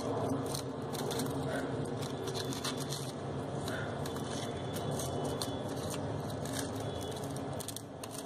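Crepe paper and floral tape rustling and crinkling close up as the tape is wound around a wire stem, with many small crackles throughout.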